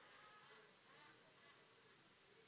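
Near silence: faint room tone with a soft hiss.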